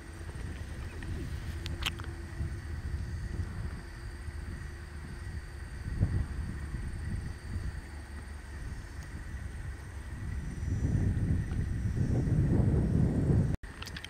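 Wind rumbling on the microphone, growing louder near the end.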